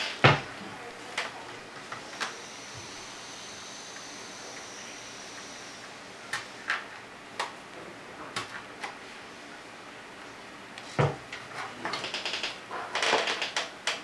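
Knocks and clicks of a plastic Lite Brite board being handled on a wooden desk while LEDs are worked into its punched black paper: a sharp knock right at the start, scattered small clicks, a thump about eleven seconds in, then a rattling clatter near the end as the board is lifted. A faint steady high whine sounds for a few seconds in the first half.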